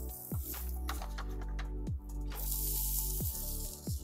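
Background music, with a hiss of sizzling from about two seconds in to near the end as white asparagus spears go onto the hot, oiled griddle plate of a gas barbecue.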